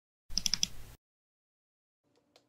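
A quick run of four clicks in under a second, then silence.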